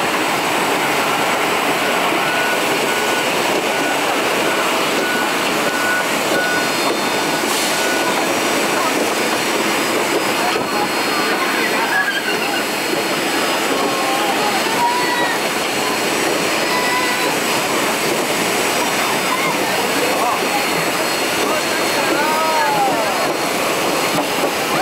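Jet airliner cabin noise: a steady rush of engine and air noise with a faint high whine running through it, and passengers talking indistinctly in the cabin.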